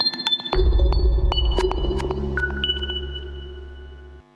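Electronic music sting of a TV news transition graphic: high pinging tones and sharp ticks over a deep bass note that comes in about half a second in and fades out near the end.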